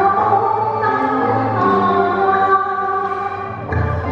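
A woman singing a Cantonese opera song through a microphone, holding long notes that change pitch every second or so.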